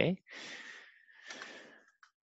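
Two long, airy breaths close to the microphone, like a sigh. A faint steady high tone runs beneath them.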